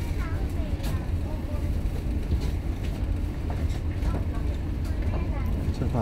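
A passenger ferry's engines running with a steady low rumble, heard on deck, with faint voices in the background.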